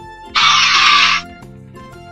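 Light children's background music, with a loud, hissy, breathy burst lasting under a second from about a third of a second in: the animal sound effect played for the giraffe.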